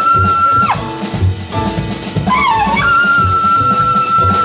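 Jazz trumpet solo with a band: a long high held note that falls away just under a second in, then a bending phrase that climbs to another long high held note. Cymbals, double bass and drums play behind it.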